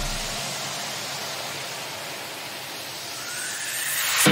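Steady rush of wind and road noise on the microphone of a motorcycle riding in traffic, with no distinct engine note. The tail of a music track fades out in the first half-second.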